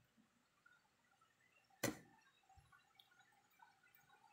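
A metal spoon clinking once, sharply, against a plate, about two seconds in, followed by a soft knock; otherwise near silence.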